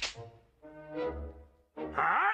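Orchestral cartoon score with held brass notes, opening with a short sharp hit.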